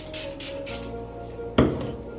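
Trigger spray bottle of heat protectant spritzed onto hair in several quick pumps, a run of short hisses about six a second in the first half second or so, over background music. A single sudden loud knock about one and a half seconds in.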